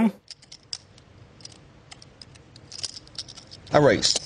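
Poker chips clicking together as a player handles his stack at the table: a series of faint, light, irregular clicks.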